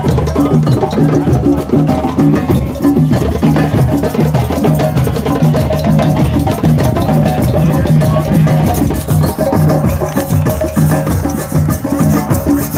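A beach drum circle: many drums played together in a fast, dense, steady rhythm.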